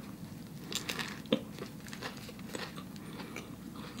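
A person chewing a bite of vegan buffalo chicken burger, close to the microphone: quiet mouth sounds with scattered faint clicks and one sharper click a little over a second in.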